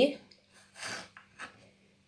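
The tail of a woman's speech, then a quiet pause holding a soft, short breath and a faint tap.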